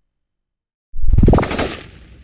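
Channel logo sting sound effect: after a short silence, a sudden loud burst of rapid rattling pulses with a rising tone, fading out over about a second.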